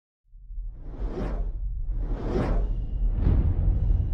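Cinematic whoosh sound effects: three swooshes about a second apart, each swelling and fading, over a deep rumble that builds in loudness.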